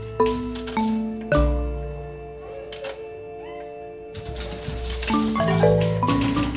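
Robotic mallet-struck marimba playing a phrase over low sustained bass notes: three struck notes in the first second and a half, a sparse stretch in the middle, then a quick run of notes near the end.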